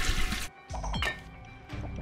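A toilet flushing, its rush of water cutting off sharply about half a second in, followed by a clink and a short falling sound effect over background music.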